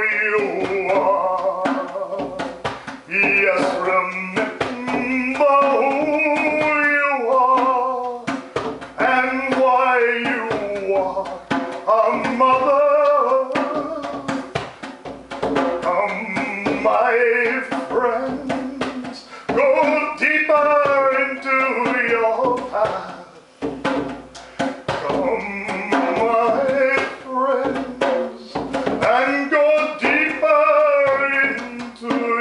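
Wordless male overtone singing: phrases of a few seconds on a low held pitch, the overtones above it shifting as the mouth changes shape, with short breaths between. Soft frame-drum strokes sound underneath.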